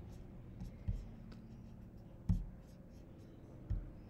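Faint scratchy rubbing of a hand working a computer pointer on a desk, with three soft knocks about a second and a half apart, over a low steady room hum.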